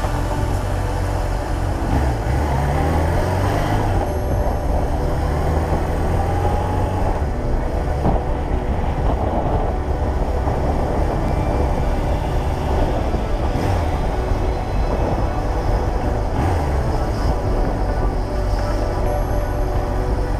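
Background music over a motorcycle's engine running as it is ridden, its engine note rising and falling in the first few seconds.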